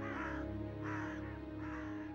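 A bird calling three times, evenly spaced, over background music with low sustained notes.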